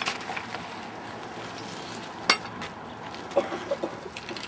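Hurst hydraulic spreader being handled and stood upright on its tips: one sharp metal knock a couple of seconds in, then a few light clinks near the end, over a steady background hiss.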